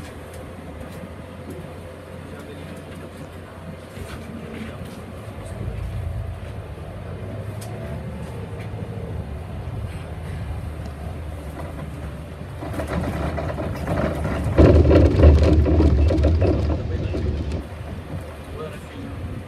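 Cabin noise of a Solaris Urbino 15 city bus on the move: engine and road noise, which grow louder for about three seconds near the end as the bus draws up to a stop.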